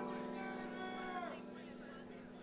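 Electric instruments on a band stage noodling before a song: a few sustained notes bend down in pitch and die away about a second in, over a steady low hum.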